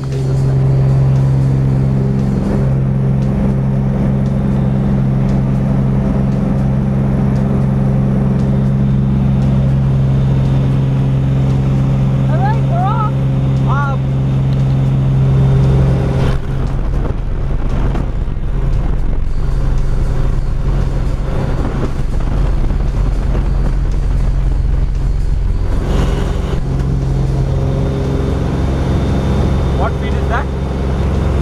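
Small propeller airplane's engine running steadily, heard from inside the cabin as it takes off and climbs. The steady drone changes character about halfway through, turning lower and rougher, and returns to its first note near the end.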